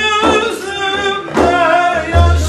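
A man singing an Urfa-style Turkish folk song in a melismatic voice, accompanied by a large hand-beaten frame drum (def). The drum strikes twice, about a fifth of a second in and again near a second and a half.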